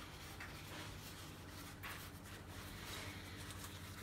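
Faint papery rustling and crinkling of filo pastry sheets and baking paper as the edges are folded in over the pie filling, with a few soft crackles.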